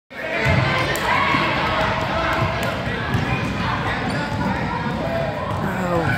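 Basketballs bouncing on a gym's hardwood floor, with many children's voices chattering over them.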